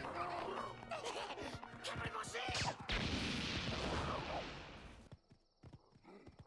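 Anime episode soundtrack playing at low level: cartoon character voices and sound effects with scattered knocks, and a rushing noise in the middle. It fades to near silence about five seconds in, leaving a faint steady high tone.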